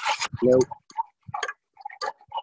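Several short, irregular clicks from a gas burner's igniter being tried, the burner failing to light.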